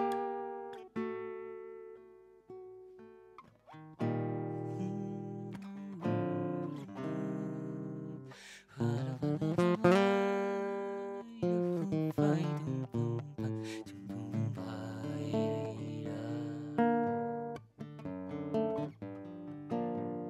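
Acoustic guitar playing an instrumental interlude of a folk zamba: picked notes and chords that ring and die away, with a quicker run of notes about halfway through.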